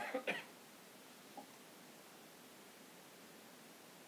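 A person coughing, two quick bursts right at the start, with a faint short sound about a second later; after that only the steady faint hiss of a quiet room.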